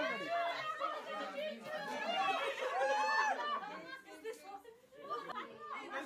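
Several people talking over one another: a crowd's chatter.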